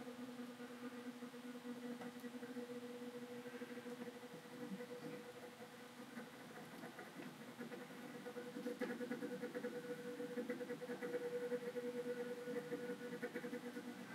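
Sound-fitted OO gauge model Class 37 running: the TTS sound decoder plays a diesel engine sound through the model's small speaker as a quiet steady hum. It grows louder from about eight seconds in, as the loco picks up speed from its crawl.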